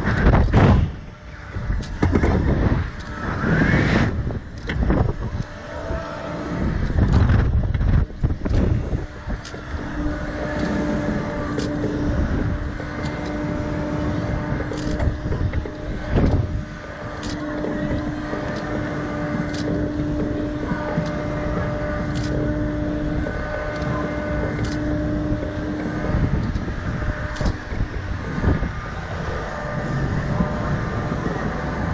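Wind rushing over the onboard microphone of a Slingshot reverse-bungee ride, in loud gusts for the first several seconds as the capsule swings, then settling into a steadier rush with a faint held tone and faint ticks about once a second.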